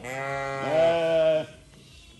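Domestic sheep bleating: two long bleats overlap, the second starting about half a second in and louder, both breaking off about one and a half seconds in.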